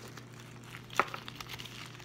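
Clear plastic zip-top bag crinkling as it is handled, with a sharp tap about a second in and a few lighter ticks.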